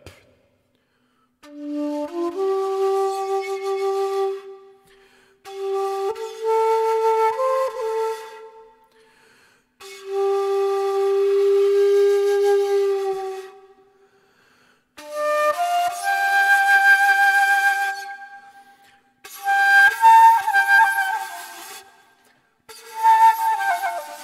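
Shakuhachi, an eighty-year-old Japanese end-blown bamboo flute, played by a beginner who is still learning to sound a note: six breathy held notes separated by pauses for breath. Some notes step up or down in pitch within a phrase, and the later ones sit higher.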